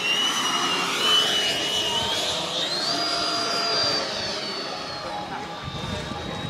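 Electric ducted fan of a model L-39 Albatros jet (a 90 mm seven-blade VASA fan) flying past: a high whine over a rush of air. About two and a half seconds in the whine rises in pitch, then holds and slowly fades.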